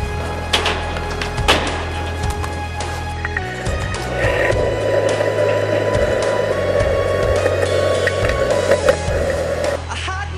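Skateboard on concrete: two sharp board clacks in the first two seconds, then wheels rolling with a steady grinding rumble from about four seconds in until just before the end. A backing rock song plays throughout.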